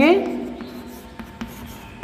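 Chalk writing on a chalkboard: a faint scratch with a few short ticks as a word is chalked, after a man's voice trails off at the start.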